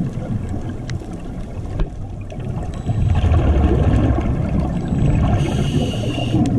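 Muffled underwater water noise picked up by a camera in a waterproof housing: a low rumble and gurgle of moving water, growing louder about halfway through, with a brief hiss near the end.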